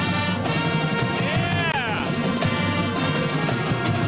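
High school band playing live, with trombones, saxophone and flutes.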